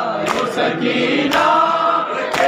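A crowd of men chanting a noha in unison, with two sharp slaps a second apart from rhythmic chest-beating (matam) keeping time.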